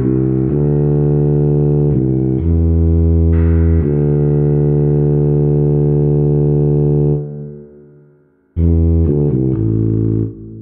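Tuba playing a slow bass line: a few sustained low notes, then one long held note that fades away about seven seconds in. After a short pause, a quick run of short notes comes near the end.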